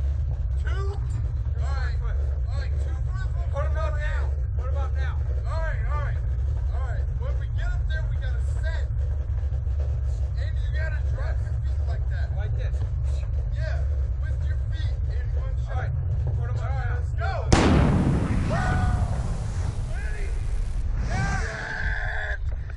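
Voices and a steady low rumble around a Slingshot reverse-bungee ride capsule. Then, about 17 seconds in, a sudden loud rush of noise lasting about three seconds as the capsule is released and shot upward.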